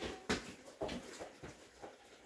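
Goat hooves knocking on a wooden floor: a few irregular steps, about two a second.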